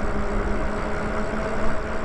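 Electric bike under way: the motor gives a steady low whine over wind and road noise while riding.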